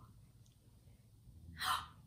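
Near silence, then about one and a half seconds in a woman's single short, sharp gasp of surprise.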